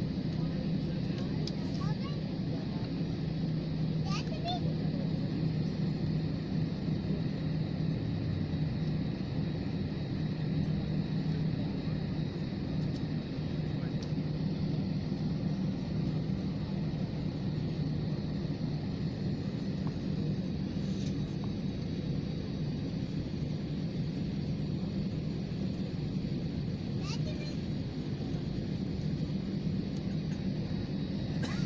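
Steady low drone inside a jet airliner's cabin as it moves away from the gate and taxis across the apron.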